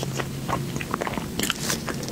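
Close-miked eating sounds of a soft pink dessert bun: wet chewing clicks throughout, with a denser burst of bite sounds about one and a half seconds in as she bites into it again.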